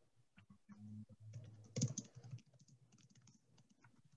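Faint typing on a computer keyboard, scattered keystroke clicks with a quicker flurry about two seconds in.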